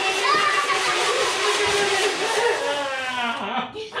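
A small child's long, loud yell, wavering in pitch, which breaks off about three and a half seconds in.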